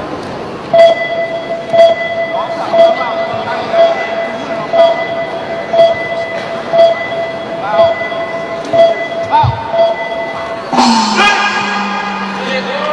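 Match timer beeping about once a second, roughly ten times, counting down the last seconds of a sanda round, then a loud long buzzer about eleven seconds in that ends the round, over crowd chatter.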